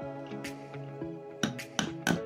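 A mallet tapping the spine of a big knife a few times, driving the blade to trim the outside of a small wooden ring; the sharpest taps come close together in the second half. Instrumental background music plays throughout.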